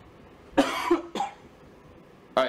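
A man coughs twice near the microphone: a longer cough about half a second in, then a short second one.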